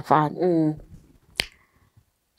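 A woman's voice speaks briefly and trails off, then a single sharp click sounds about one and a half seconds in.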